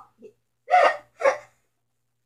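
Two short, breathy vocal sounds from a child, about half a second apart, with no words.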